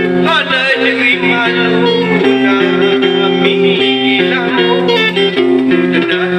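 Live music: a mandolin playing a plucked melody over a steady bass line that repeats in a regular pattern, with a man singing into a microphone.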